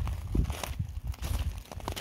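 Footsteps on loose landscape gravel: a series of irregular crunching steps with low rumbling.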